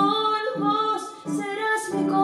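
A woman singing a tango in Spanish, accompanied by electric guitar.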